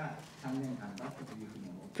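A voice holding a drawn-out hesitation 'uh', steady in pitch, for about a second and a half between phrases of speech.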